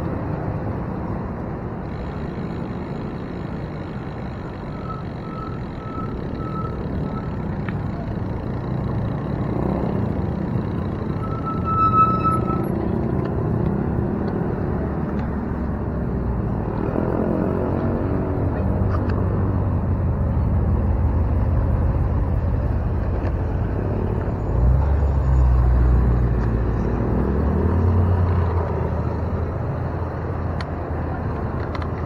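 City road traffic heard from a moving bicycle: a steady low rumble of passing cars, with an engine rising in pitch about seventeen seconds in and a heavy, deep vehicle rumble close by near the end. A few short high beeps sound early on, and a louder beep about twelve seconds in.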